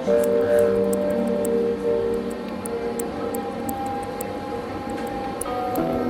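Background music of slow, held chords that change every second or so.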